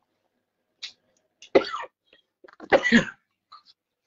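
A person coughing twice, about a second and a half in and again about three seconds in, with faint small clicks between.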